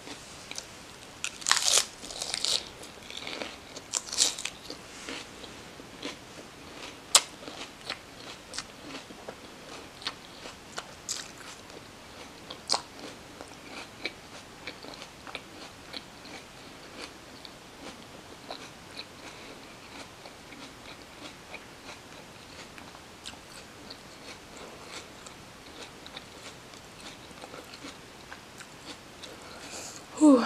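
Crunchy chewing of a chicken lettuce wrap, crisp iceberg lettuce and chicken bits, close to the microphone. The loudest crunches come in the first seven seconds, then it eases into softer, steady chewing.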